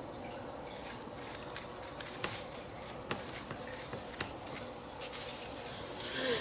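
Paintbrush working decoupage medium over a paper word strip on a journal page: faint brushing and rubbing on paper, with a few light ticks and a slightly louder swish near the end.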